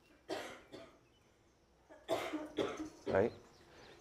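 A person coughing and clearing the throat in a few short, quiet bursts with pauses between.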